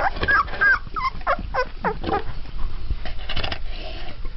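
Twelve-day-old Mastiff puppies whimpering and squeaking: a quick run of short high calls, several sliding down in pitch, in the first two seconds, then fewer and fainter sounds.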